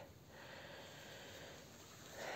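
Near silence: only faint, steady background noise.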